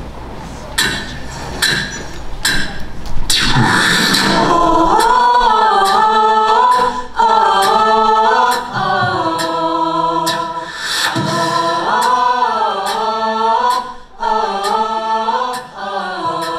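Show choir singing in many-voiced harmony, largely a cappella, with sharp percussive hits keeping a beat. The first few seconds hold mostly the hits; the full choral singing comes in about four seconds in.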